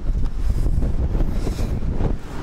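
Strong wind buffeting the microphone: a heavy, uneven low rumble.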